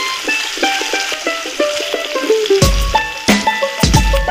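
Background music, a melody of short notes whose beat comes back in about two and a half seconds in, over a steady sizzle of rohu fish pieces frying in oil in an open wok.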